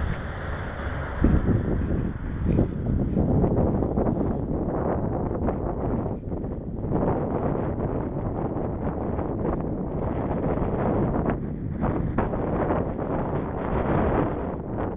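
Wind buffeting the microphone of a camera on a moving bicycle, a rough, gusty rush that rises and falls, with a couple of knocks about a second and two and a half seconds in.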